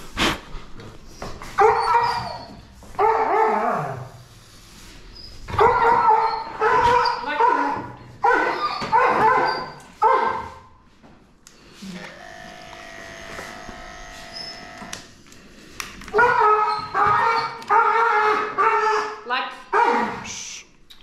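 A dog whining and barking in repeated short cries, in several groups with pauses between them. In the middle a steady hum runs for about three seconds.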